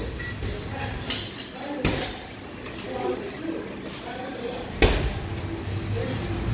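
Three sharp thuds of strikes landing on heavy punching bags, about one and two seconds in and again near the end, over a background of voices.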